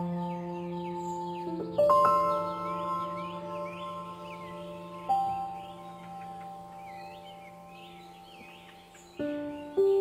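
Background music of slow, ringing chime-like notes, a few struck together every few seconds and left to fade, with bird chirps running through the track.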